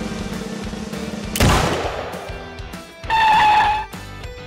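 Background music, broken about a second and a half in by a single loud starting-pistol shot that fades quickly, then a steady high tone held for nearly a second near the end.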